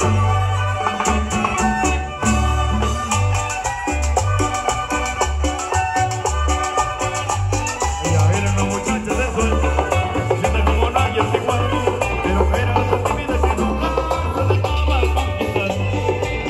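Live chanchona band playing an instrumental Latin dance tune: violin and electric guitar lines over a pulsing bass and drums.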